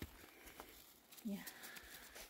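Mostly quiet outdoor ambience with faint scattered ticks and rustles, and a softly spoken "yeah" a little over a second in.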